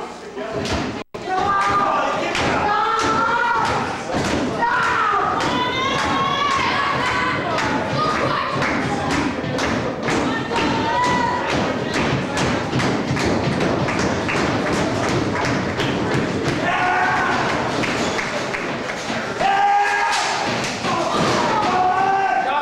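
Repeated thuds and knocks in a wrestling ring, coming thick and fast through most of the stretch, with spectators shouting over them.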